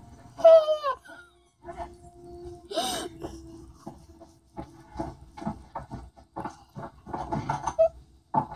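Film soundtrack played from a television: a short falling whimpering cry near the start, a steady hum with a brief whoosh about three seconds in, then a run of quick knocks and thuds.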